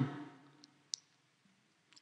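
Near silence in a pause between words, broken by a single short, faint click about a second in.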